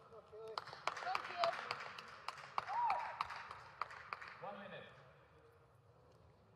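Scattered clapping and voices echoing in a large sports hall, building for about four seconds and then fading out.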